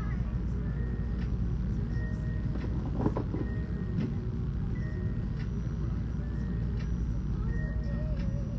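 A steady, low mechanical rumble running throughout, with a brief louder sound about three seconds in.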